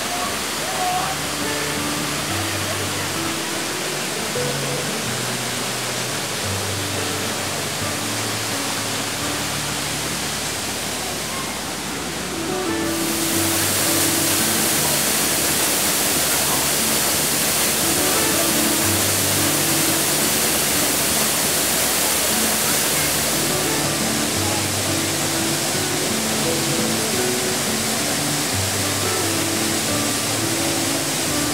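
Steady rush of a small waterfall, becoming louder and brighter about 13 seconds in, under slow background music of soft held low notes.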